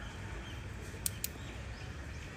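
Outdoor ambience: a steady low rumble with faint high chirps, and two sharp ticks in quick succession about a second in.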